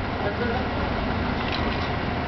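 Steady outdoor background noise with indistinct voices, and a light knock about one and a half seconds in.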